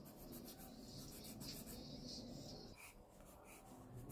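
Pencil sketching on sketchbook paper: faint, quick scratching strokes of the lead across the page, one after another.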